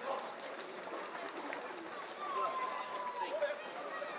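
Footsteps of a large pack of runners going by on a wet road, mixed with spectators' voices and chatter; a single drawn-out call is heard a little past halfway.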